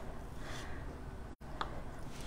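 Knife slicing a block of quince paste on a cutting board: faint room noise with one light click of the blade meeting the board a little past halfway.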